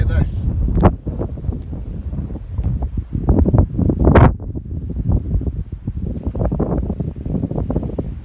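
Wind blowing across the microphone in uneven gusts, a low rumble that swells and drops.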